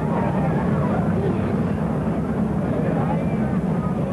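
Voices of a group of people talking and calling over a steady low rumble.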